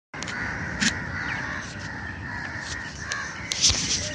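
Birds calling repeatedly over steady background noise, with a few sharp clicks, the loudest just before the end.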